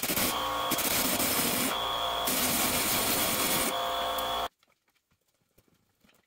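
Pneumatic air hammer rattling against the rusted cast iron steering-box bracket of a 1954 VW bus, in one continuous run that changes tone a few times as it is worked, then stops suddenly about four and a half seconds in.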